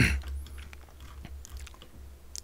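A brief sharp noise right at the start that fades quickly, then faint scattered clicks over a low steady hum.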